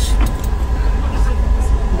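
Steady low rumble of engine and road noise inside a moving vehicle's cabin, with a faint steady whine above it.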